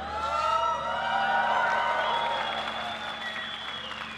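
Audience applauding and cheering, with held and gliding voice-like whoops over the clapping; it swells in the first second or two and then dies away toward the end.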